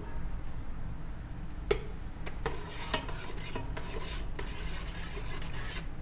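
A metal spoon stirring boiling teriyaki sauce in a tall stainless steel stockpot, with several light clinks of the spoon against the pot.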